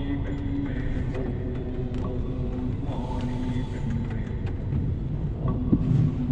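Steady low rumble of a car's engine and tyres on a wet road, heard from inside the cabin in slow traffic, with held pitched tones over it and a short knock near the end.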